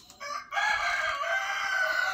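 An animal's call: a short note, then one long held call of about two seconds that fades slightly at its end.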